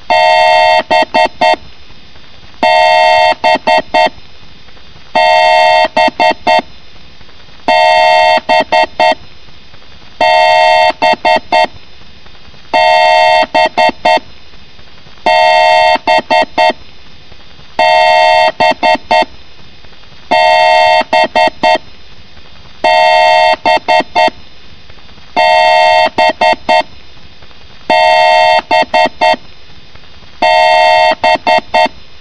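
A loud, horn-like electronic beep repeating about every two and a half seconds. Each repeat is a steady tone of about a second, followed by three or four quick stuttered blips.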